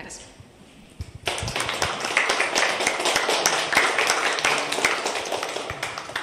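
Audience applauding after a talk. The applause starts about a second in and dies away near the end.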